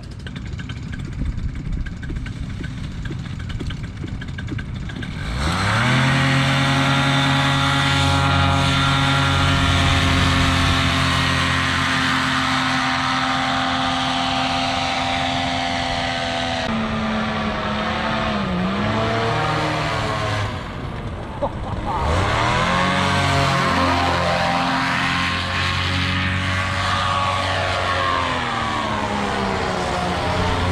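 Paramotor engine and propeller throttled up to full power about five seconds in for a launch, then running steady and loud at high revs. Later the pitch dips and climbs again.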